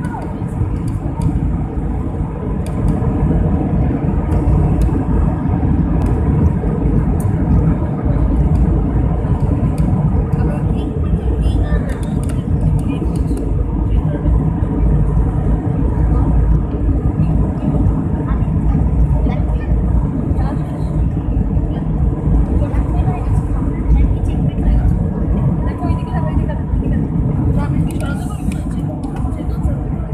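Inside a jet airliner's cabin during the takeoff roll: the engines run at takeoff thrust, with a loud, steady low rumble from the wheels on the runway. The rumble eases a little near the end as the aircraft lifts off and begins to climb.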